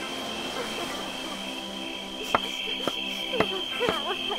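Cartoon soundtrack: a steady held music chord with a high cricket-like trill running under it. From about halfway, a series of sharp clicks and brief squeaky vocal sounds come in.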